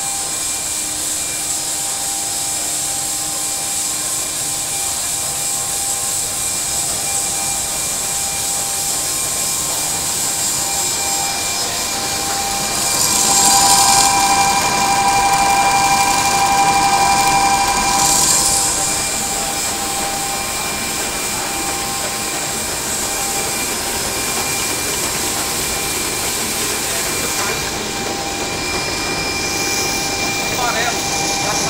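Soybean extrusion and screw oil-press line running steadily, with motor and screw machinery whining over a constant mechanical hiss. It grows louder and hissier for about five seconds in the middle.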